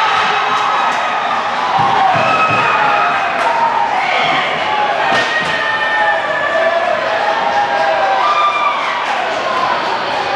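Arena crowd at an ice hockey game cheering and shouting after a goal, many voices over one another, with a few sharp knocks about halfway through.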